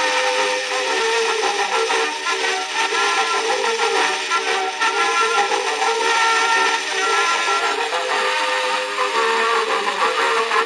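An early acoustic recording of a brass military band playing a medley on an Edison cylinder: held melody notes and chords, thin and with no bass, over a steady hiss of surface noise.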